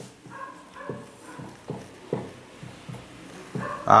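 Whiteboard marker squeaking and scraping on the board in a series of short strokes while a ring structure and letters are drawn, with a few high squeaks in the first second.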